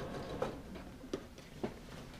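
Three light, sharp clicks about half a second apart from handling at a Janome sewing machine that is not running, as fabric is shifted under the presser foot.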